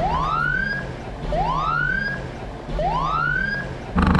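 Siren giving three rising whoops about 1.3 seconds apart, each climbing and then levelling off, over a low steady drone.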